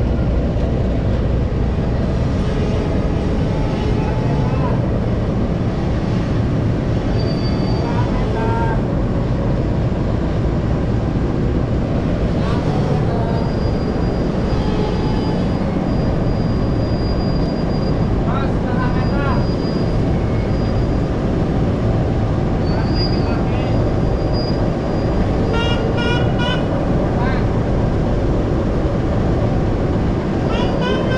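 Diesel engine of a CC 206 diesel-electric locomotive running with a steady deep rumble as the locomotive moves slowly up to the carriages to be coupled on. Voices are heard over the rumble.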